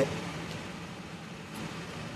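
Steady background ambience: an even hiss with a faint low hum, with no distinct event standing out.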